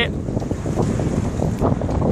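Strong wind buffeting the microphone aboard a small sailboat heeled over in 20 to 22 knots, a steady gusting rumble with the rush of water along the hull beneath it.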